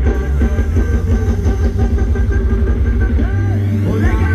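Loud live-band music for Thai ramwong dancing, with a heavy, steady bass line and a melody running over it.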